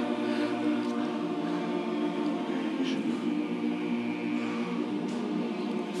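A large barbershop chorus singing a cappella, holding a sustained chord on an "ng" hum with steady pitch.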